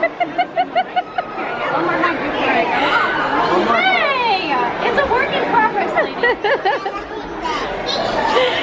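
Overlapping chatter of several voices, among them high young girls' voices, with the general hubbub of a busy restaurant dining room.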